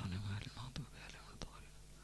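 Faint, murmured male voice reciting a supplication under his breath, with two soft clicks in the second half.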